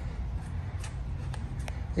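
Light handling clicks from a Milwaukee undercarriage work light as its hinged plastic arms are folded, a few faint ticks over a steady low background hum.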